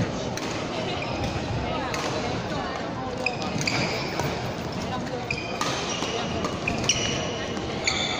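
Badminton rally: several sharp racket hits on a shuttlecock, with short high squeaks from players' shoes on the court floor, echoing in a large hall over background chatter.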